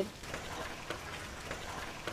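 Faint steady background noise with a few soft clicks.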